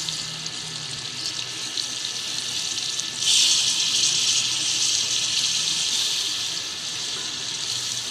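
Chicken, potato and pea curry sizzling in hot oil in a metal pot, a steady hiss that gets suddenly louder about three seconds in and stays strong.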